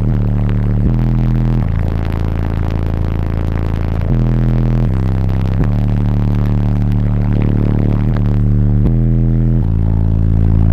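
A bass line played very loudly through two 24-inch Sundown Team Neo subwoofers driven by two Sundown 7500 amplifiers, heard inside the vehicle's cabin. Deep steady notes hold for about a second at a time before jumping to the next pitch.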